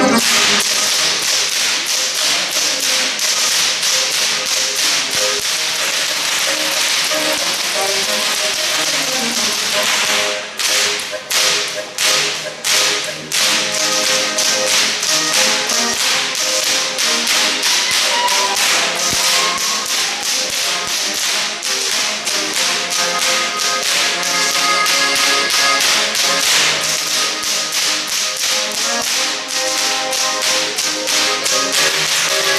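Bavarian Goaßl whips cracked in fast rhythm by a group of whip crackers (Goaßlschnalzen), with a live accordion band playing underneath. Between about ten and thirteen seconds in, the cracking thins to a few separate cracks, then resumes at full pace.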